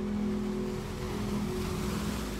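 Soft background music holding a sustained chord over a beach ambience track, with a wave of surf washing in and swelling about a second in.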